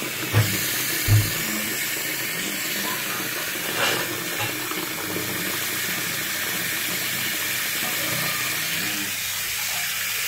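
Tap water running steadily into a sink and splashing onto a wristwatch in the basin. Two short dull knocks sound about half a second and a second in.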